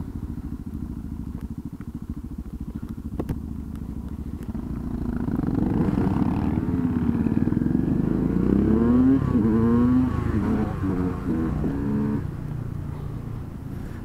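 Small motorcycle engines, the nearest being a KTM EXC 125 two-stroke, idling steadily, then pulling away from about five seconds in: the revs climb and drop repeatedly as the bikes accelerate through the gears, easing off near the end.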